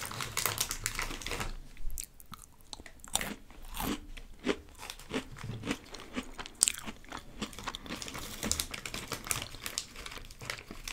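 Close-miked chewing and crunching of snacks, a run of irregular crisp crunches with one sharp crack about two-thirds of the way through.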